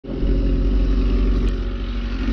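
Motorcycle engine idling steadily, a low, even running note with regular firing pulses.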